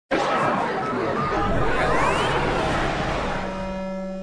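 Opening title sting: a dense crowd-like babble with a few rising whistle-like glides about two seconds in, thinning near the end into a steady held musical tone.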